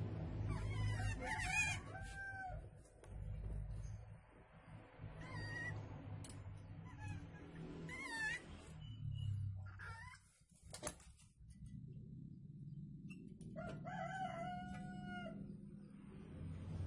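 Animal calls: several short wavering calls, then one longer held call near the end, over a low steady hum. A single sharp click comes about two-thirds of the way through.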